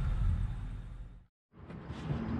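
Low, steady background rumble that fades away to a moment of dead silence just over a second in, then fades back in: an edit joining two recordings.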